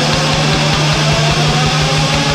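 Japanese hardcore punk recording: rapid, pounding kick-drum beats under a steady, droning distorted guitar and bass.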